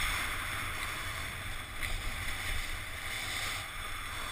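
Wind rushing over an action camera's microphone while a snowboard slides down a groomed slope, a continuous hiss of the board over snow with low buffeting underneath.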